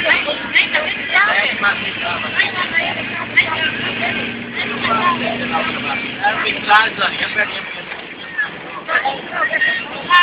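People talking over the steady hum of a moving van and its road noise, heard from inside the vehicle.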